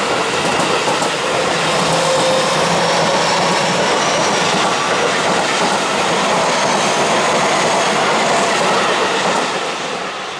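Seibu 30000 series ten-car electric train passing at speed close by without stopping: a loud, steady rolling noise of steel wheels on the rails, which starts to drop off near the end as the last car goes past.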